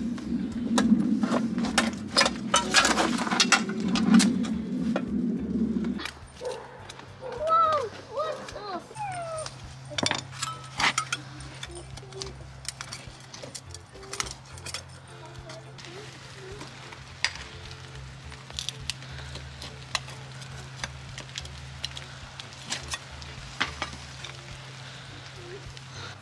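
Steel tools scraping and clinking against two magnet-fishing magnets stuck together as they are pried apart. The first six seconds hold loud scraping on concrete, and sharp metallic clicks are scattered through the rest. A brief wavering voice-like whine comes about eight seconds in.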